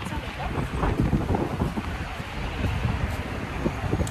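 Strong wind buffeting the microphone, a loud irregular low rumble that gusts up and down.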